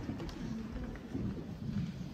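Meeting-hall ambience: a low murmur of people talking quietly, with faint rustles and small clicks.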